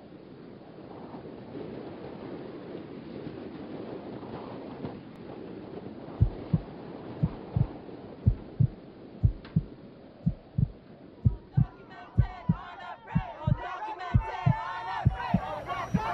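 Live-concert crowd noise building, then about six seconds in a deep double thump like a heartbeat starts, about one beat a second, as the song's intro. From about eleven seconds, many voices in the crowd shout and cheer over the pulse.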